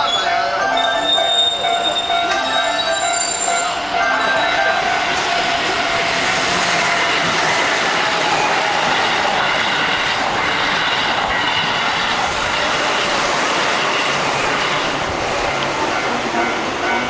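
Keihan electric train passing close by: a steady wheel squeal for the first few seconds, then the sustained noise of the cars running past.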